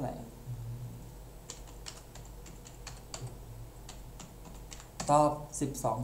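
Keyboard keys clicking in a quick run of about ten presses over roughly two seconds, keying in a calculation.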